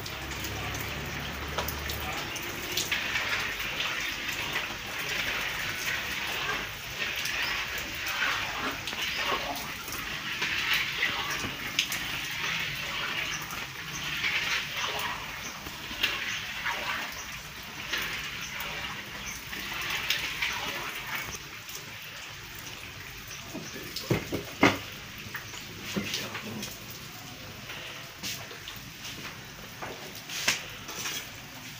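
Gulab jamun dough balls deep-frying in hot oil in a wide iron karahi: a steady sizzle and bubbling, full of small crackles, that swells and fades every couple of seconds. A few sharp clicks come in near the end.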